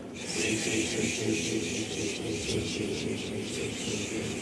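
A group of people hissing 'shh' through their mouths together in a steady, pulsing stream of breath: a vibrato breath exercise for saxophone, with the air pushed out in even waves.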